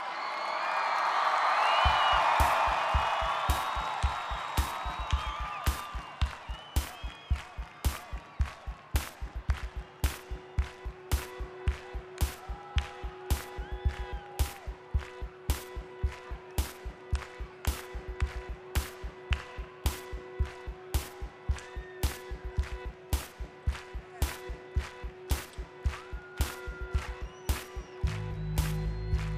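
Crowd cheering fades as a steady drum beat starts, low kick thumps with a sharp clap-like hit on each beat. A held synth note comes in about ten seconds in.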